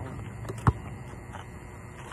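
A basketball bouncing on an outdoor court: a faint bounce about half a second in, then one sharp, loud bounce, over a steady low hum.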